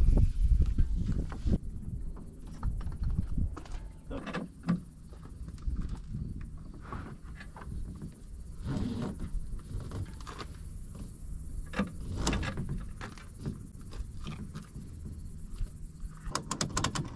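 A ratchet strap being worked and tightened to hold a plastic jon boat on a wooden dolly: scattered clicks, knocks and rattles of the ratchet and strap handling. Under it runs a steady low rumble.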